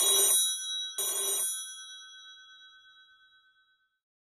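Telephone bell ringing: two short rings about a second apart, the bell's tone dying away over the next couple of seconds.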